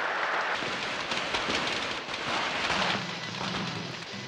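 Strings of firecrackers going off, a dense continuous crackle of rapid small bangs.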